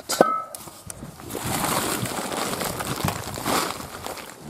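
Plastic tarp and woven polypropylene sheeting rustling and crinkling as they are pulled off a stored machine. There is a sharp click just after the start, then steady rustling with a few light knocks.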